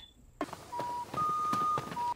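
Three electronic beeps: a short lower tone, a longer higher tone, then a short lower one again, over a faint hiss with a few light clicks.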